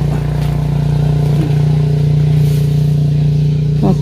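An engine running steadily, a constant low-pitched hum that neither rises nor falls.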